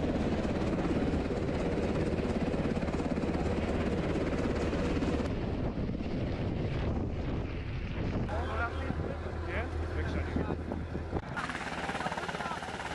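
UH-60 Black Hawk helicopter running close by, its rotor beating steadily, with voices mixed in. The sound changes abruptly a few times where shots are cut together.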